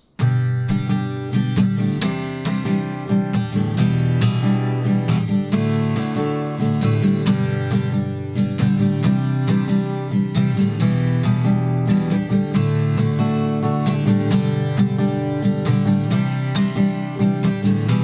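Acoustic guitar strummed in a down, down, up, up, down, up pattern through the chords G, C, E minor and D, a steady run of quick strums.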